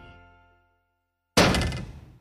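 A sustained music chord fades out, then about 1.4 s in comes a single sudden heavy thunk, a cartoon impact sound effect that dies away in under a second.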